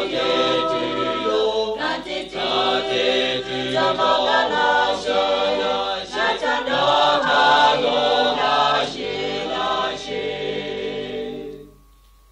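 A choir singing, several voices moving from note to note together; the singing fades away near the end.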